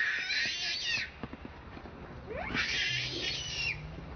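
Baby macaque screaming in distress: two long, shrill screams, each sweeping up in pitch at the start, the second beginning a little past two seconds in.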